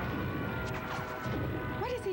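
Monster-movie crashing and rumbling of destruction over dramatic film music, with hiss from a poor off-air tape recording.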